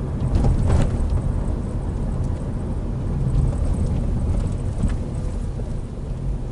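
Steady low road and engine rumble inside the cabin of a Toyota Isis minivan driving along a street.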